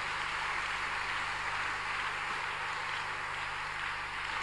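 A large congregation applauding, many hands clapping together in a steady, even wash of sound.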